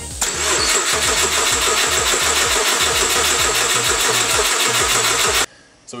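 Subaru EG33 flat-six turning over on the starter for about five seconds without catching, a fast, even rhythm that stops suddenly. This fits the ECU sending no ignition signal to the coils.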